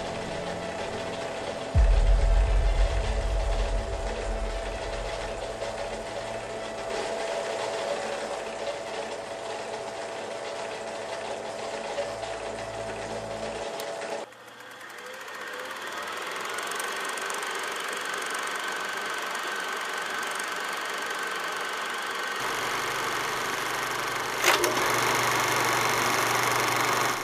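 A small machine running steadily with a light mechanical clatter. The sound changes abruptly about fourteen seconds in. A loud low rumble comes a couple of seconds in, and a sharp click near the end.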